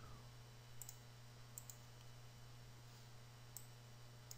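Near silence broken by a few faint computer mouse clicks, in pairs: about a second in, again shortly after, and near the end.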